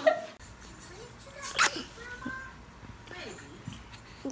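A toddler kissing a newborn's cheek: a single sharp kiss smack about a second and a half in, followed by a few faint small vocal sounds.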